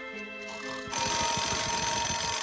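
Alarm clock ringing loudly, a fast continuous rattling ring that starts suddenly about a second in, over soft background music.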